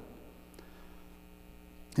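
Steady low electrical mains hum with faint room tone during a pause in speech; a spoken word begins at the very end.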